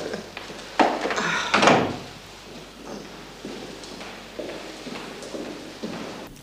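A room door being opened and shut: a sharp click about a second in, then the door closing a moment later. Fainter scattered sounds follow.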